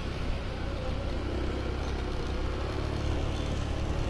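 A moving road vehicle's engine running steadily, with road and wind noise over it. A faint steady tone comes in about a second in.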